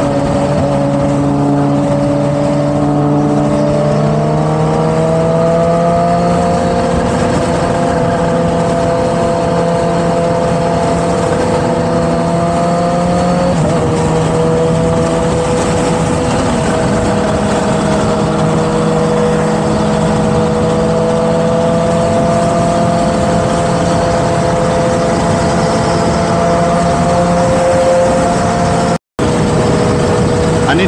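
On-board motorcycle engine running at a steady cruise under wind noise. Its pitch climbs gently a few seconds in and steps down once about halfway through. The sound cuts out for an instant near the end.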